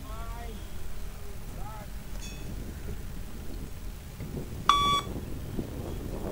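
A single short electronic beep from the Luc Léger beep-test recording, about three-quarters of the way through: the timing signal by which the shuttle runner must reach the line.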